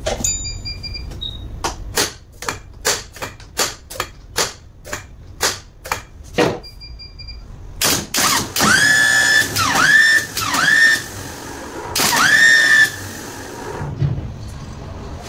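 Truck starter motor on a test bench, run from battery cables. First comes a rapid run of sharp clicks, about three a second, as the cable is touched to the terminal. Then the motor spins up four times in short bursts of about a second, each a whine that rises quickly in pitch and levels off.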